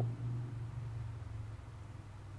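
A steady low hum with faint overtones over a faint hiss, easing slightly about halfway through.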